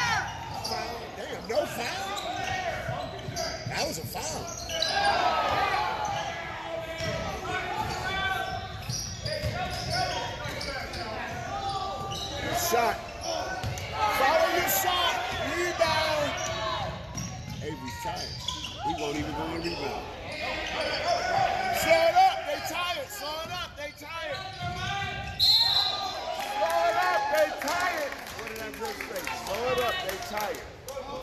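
A basketball dribbled and bouncing on a gym's hardwood floor during play, with shouting and talking voices in the gym throughout and a short high squeal about 25 seconds in.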